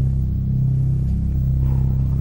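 A single deep note held steadily on an electronic keyboard, sustained for an ominous, dread-building effect.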